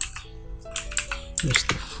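Computer keyboard being typed on, a quick run of keystrokes as a word is entered.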